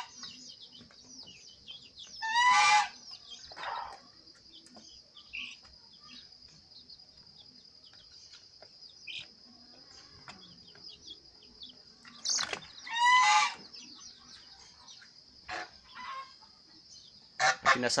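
Domestic chickens calling: two loud pitched calls under a second long, about two and a half and thirteen seconds in, over faint scattered chick peeps and a steady high-pitched whine in the background.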